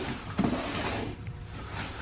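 Black plastic trash bag rustling and crinkling as a hand rummages inside it, with light handling noise.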